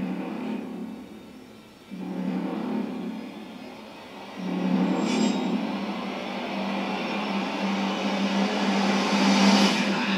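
Trailer sound design: a low drone that swells up three times and grows louder, ending in a rising whoosh just before the title card.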